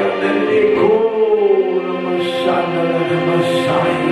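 Slow worship music: steady held chords with a voice singing a long, sliding line over them.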